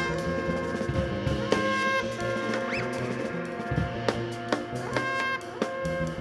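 Live jazz band playing: a trombone holds long notes with a few pitch glides, over drums with scattered sharp hits.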